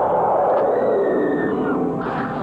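Horror-film soundtrack: a loud, rumbling wash of eerie sound effects and score. A thin high tone is held from about half a second in and bends downward near the end.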